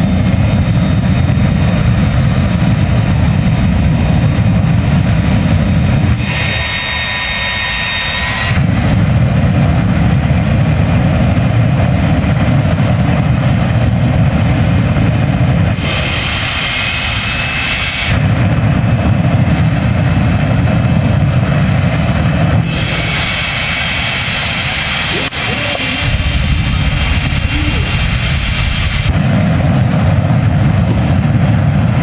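A jet truck's jet engine running with its afterburner lit: a deep, loud roar that drops away three times for two to three seconds. In each gap a high turbine whine comes through before the roar returns.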